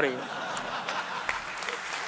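Applause: many hands clapping steadily.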